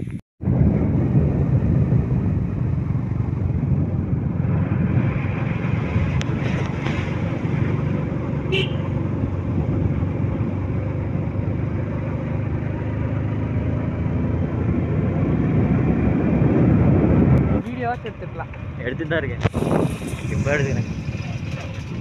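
Motorcycle running while being ridden, with wind rushing over the microphone. It drops to a quieter level about seventeen seconds in, where brief voices come through.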